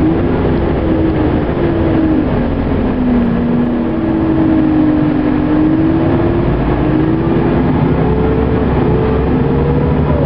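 Car engine and road noise while driving, with a steady drone. The engine note dips about three seconds in, then rises over the last few seconds as the car speeds up.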